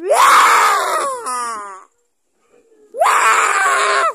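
A boy screaming twice. The first scream falls in pitch over nearly two seconds, and after a short silence a second loud scream starts about three seconds in.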